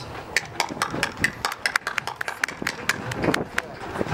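Scattered hand-clapping from spectators, many sharp irregular claps at no steady beat, with crowd voices mixed in.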